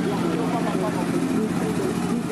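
Busy street ambience: a steady engine hum from motorcycles and other vehicles, with many people's voices chattering in the background.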